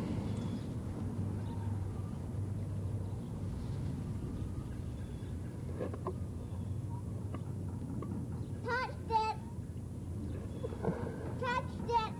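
Steady low background rumble and hiss. A few short, wavering voice sounds come about nine seconds in and again near the end.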